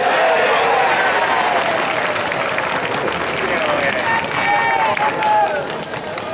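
A crowd of baseball spectators and players shouting and calling out over one another. Many voices overlap, and no single speaker stands out.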